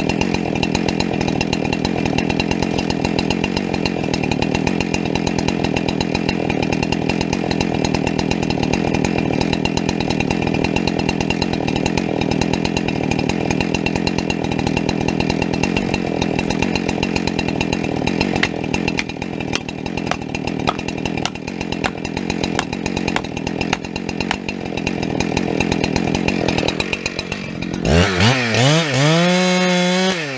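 Chainsaw idling steadily, with a few sharper knocks partway through, then revved hard near the end as it starts cutting into the trunk, the engine pitch rising and wavering under load.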